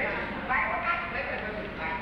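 Speech: a performer talking on stage.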